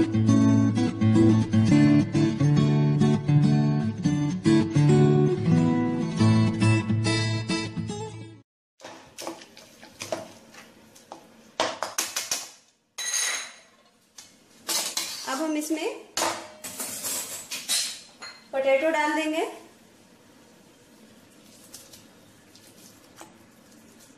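Acoustic guitar background music that cuts off about eight seconds in. It is followed by a metal utensil scraping and knocking against a steel kadai as the cooked pav bhaji vegetables are mashed and stirred. The last few seconds are faint.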